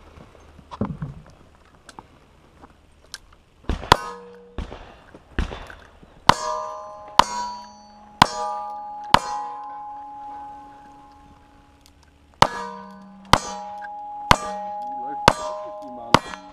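Single-action revolver shots hitting steel plate targets, each shot followed by the ringing of the struck steel. About a dozen shots come in two strings, with a pause of about three seconds between them.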